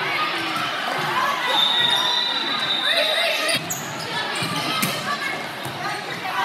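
Volleyball rally in an echoing gym: sharp smacks of hands on the ball, about three and a half and five seconds in, over players calling out and spectators talking. A short high shoe squeak on the court comes in about one and a half seconds in.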